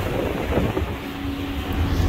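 Wind blowing on the microphone on the deck of a moving ferry, over the low rumble of the ferry's engines; a steady low hum joins in under a second in.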